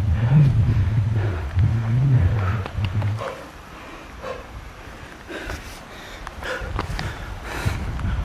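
A hiker breathing hard while climbing a steep trail, with a low rumble on the microphone in the first three seconds and short scuffs and breaths after.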